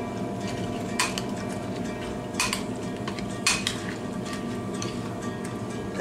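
A spoon clinking against a bowl as yoghurt and muesli are spooned and mixed: three sharp clinks a second or so apart, over a steady background hum.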